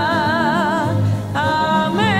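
Wordless sung music: a single voice holds long notes with a wide, even vibrato over a low instrumental accompaniment, one note fading about a second in and the next beginning shortly before the end.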